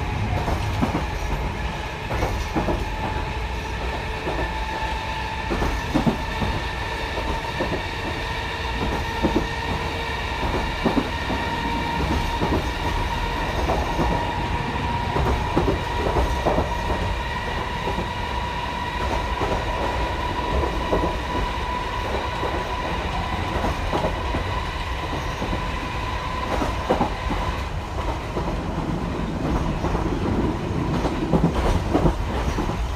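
Chikuho Electric Railway 3000 series car's nose-suspended (tsurikake) traction motors groaning at speed, heard inside the car through open windows: a steady whine that edges up in pitch and eases off near the end. Wheels clack over rail joints and there is a low running rumble underneath.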